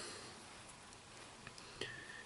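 Near silence: faint room hiss, with two small faint clicks near the end.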